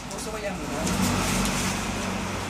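Faint voices in the background over a steady low hum.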